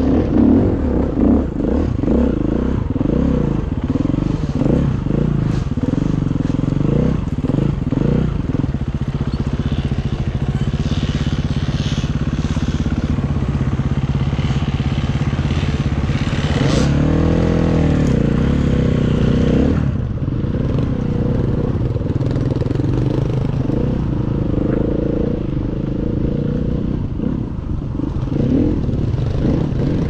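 KTM EXC enduro motorcycle engine, heard close up from the bike itself, revving up and down continuously while being ridden over a rough forest trail. Just past the middle there is a brief clattering scrape and a high-revving burst lasting a few seconds.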